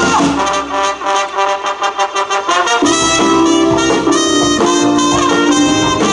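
Live soul band playing a cumbia, led by a horn section of trumpet and trombone. For the first few seconds the low end drops out under short repeated notes, then the full band comes back in about three seconds in.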